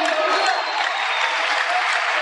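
Congregation applauding: a steady spell of many hands clapping.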